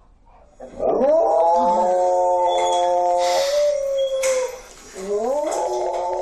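Large dog howling in two long howls: the first rises into a held note about a second in and sags at its end, the second rises again near the end and is still going. The dog is howling at being left home alone.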